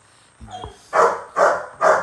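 A dog barking: three loud barks about half a second apart, starting about a second in.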